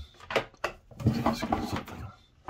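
Two light knocks early on as a metal U-bolt and a PVC pipe are handled on a wooden tabletop, followed by a man's voice.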